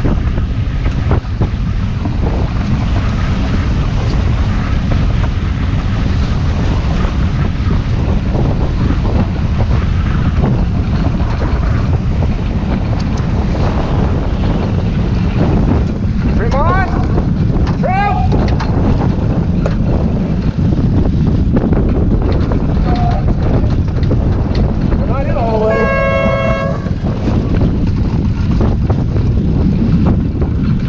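Wind buffeting the microphone over the rush of water along the hull of a heeled sailboat under way. A few short rising calls come past the middle, and a rising call that settles into a held tone comes a few seconds before the end.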